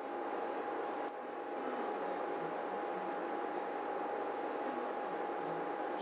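Steady background hiss of a small room with a faint steady tone through it, and one small click about a second in.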